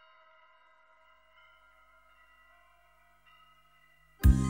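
Near silence: a very faint ambient music intro of held, ringing tones, with new notes coming in about a second and a half in and again near the end.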